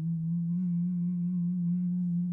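A man humming one long, steady low "mmm" with his mouth closed, held on a single pitch with a slight waver, as a drawn-out thinking "um".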